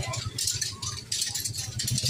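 Flagellant penitents' whips, bundles of bamboo sticks on cords, clattering rapidly and irregularly against their backs in a dense rattle of clicks.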